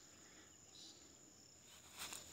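Near silence, with a faint, steady, high-pitched drone of insects.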